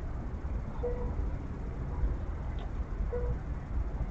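Low, steady rumble of a diesel locomotive idling at a station, with a short beep repeating about every two seconds.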